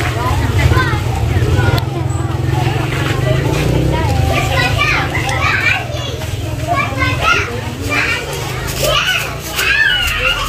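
Children's high voices and people talking and calling out, over a steady low rumble that is strongest in the first few seconds.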